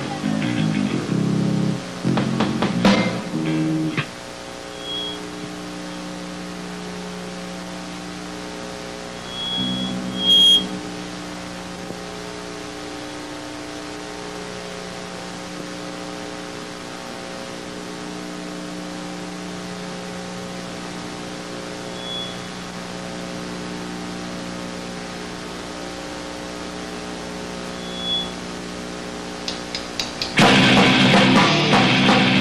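Electric guitar played through an amplifier, a few loose notes and chords for the first four seconds, then the amplifier's steady hum left ringing, with a few short, high-pitched squeals. It is the stage rig idling between the soundcheck and the first song.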